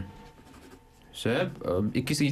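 Pencil scratching on paper, faint, in the first second. A voice starts speaking about a second in.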